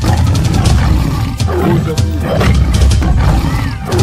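A tiger roaring, laid over background music with a heavy bass beat.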